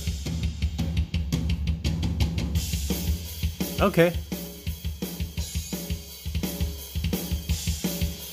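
EZDrummer 2's programmed metal drum groove playing back through a speaker: a fast, dense double-kick pattern with snare, and cymbals washing in about two and a half seconds in.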